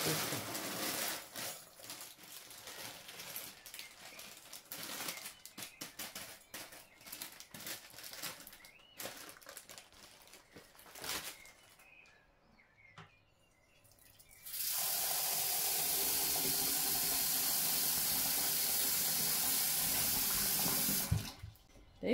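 Dry ukwa (African breadfruit) seeds poured from a plastic bag into a glass bowl, with the bag crinkling and many small clicks for about eleven seconds. After a short quiet spell, a kitchen tap runs water steadily into the bowl in a stainless steel sink for about six seconds, then shuts off just before the end.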